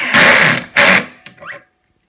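A small 12-volt cordless drill/driver (a regular driver, not an impact driver) runs in two short bursts, driving a pocket-hole screw into a wooden shelf board; the second burst is shorter and ends about a second in.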